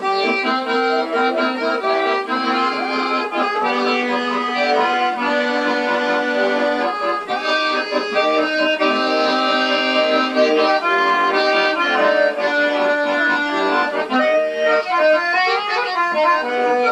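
Accordion playing a traditional dance tune in full chords, without a break, heard as a played-back recording through a television's speaker that leaves it thin, with no bass.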